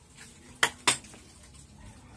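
Two sharp clinks of dishes and cutlery on a table, about a quarter second apart, as tableware is handled.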